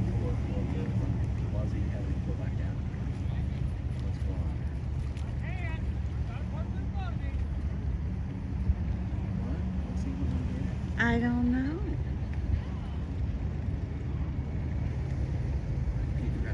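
Steady low engine rumble of a pickup truck pulling a bass boat on its trailer up a boat ramp, with faint voices in the background and a short, louder call about eleven seconds in.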